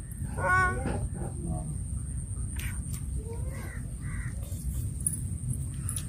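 Short bird calls, caw-like, about half a second in and again around three and a half seconds, over a steady low outdoor rumble.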